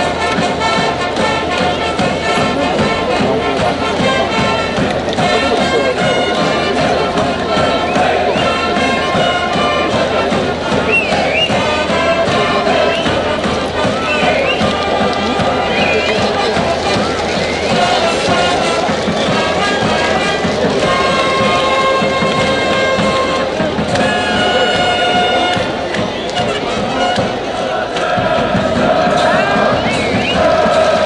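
A school cheering band's brass playing a cheer tune with long held notes, while a crowd of students in the stands shouts and cheers along.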